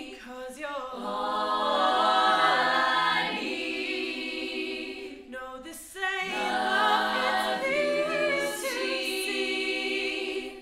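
All-female a cappella group singing, a lead voice over sustained backing harmonies, with no instruments. The singing comes in two long phrases with a short break about five to six seconds in.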